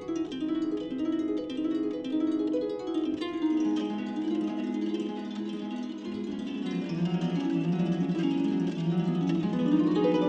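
Harp with live electronics: a dense web of rapidly repeating plucked notes, with lower notes joining a few seconds in.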